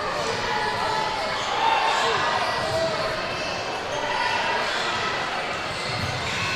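Echoing gymnasium hubbub: many overlapping voices talking, with basketballs bouncing on the hardwood court.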